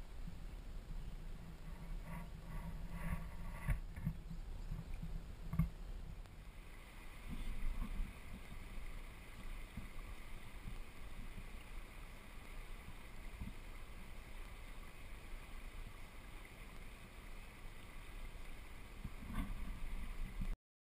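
Angler kayak moving on slow river water: water washing against the hull, with a few short knocks in the first several seconds, then a steady hiss of water.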